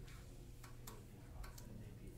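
Faint, irregular light clicks, about four of them spaced unevenly, over a steady low hum of room tone.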